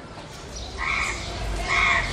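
A crow cawing twice, two short harsh calls just under a second apart, over a low rumble.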